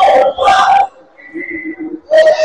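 Basketball game noise in a gym: a loud shout or call during the first second as a shot goes up, then a quieter, thin high-pitched tone lasting most of a second.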